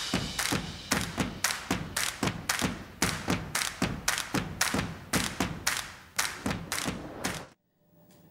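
TV channel intro sting: a rapid, even run of thuds, about four a second, fading out and stopping abruptly about seven and a half seconds in.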